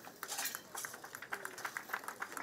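Faint, irregular light clicks and clinks from a traditional dance troupe's hand-held rattles and slung drums as the dancers move.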